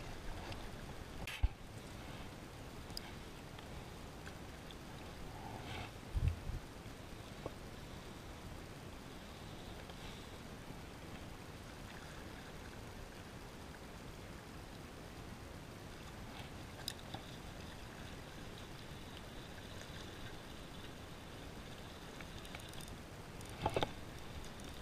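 Steady low background of water lapping and gurgling against rocks, with a sharp click about a second and a half in and a dull knock about six seconds in.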